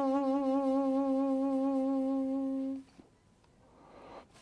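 Armenian duduk, a double-reed wind instrument, holding one long low note with a slight waver, which breaks off about three seconds in.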